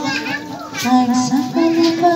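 Children's voices talking and calling out over a worship song; a long held note of the song comes back in about one and a half seconds in.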